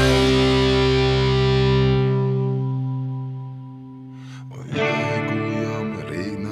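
Distorted electric guitar, an ESP LTD EC-1000 with EMG pickups through a Line 6 POD Go, letting a chord ring out and fade over about four seconds; the lowest notes drop out about two seconds in. Guitar playing starts again near the end.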